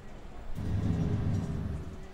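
A low rumble in a horror film's soundtrack swells about half a second in and dies away near the end, over a faint steady held tone.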